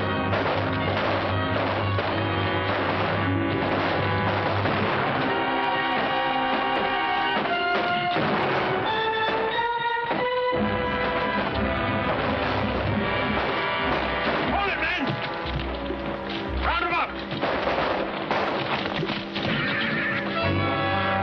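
Orchestral film-score music playing steadily, with voices and sharp knocks or crashes sounding under it.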